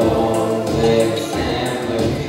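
Music with several voices singing held notes together, choir-like.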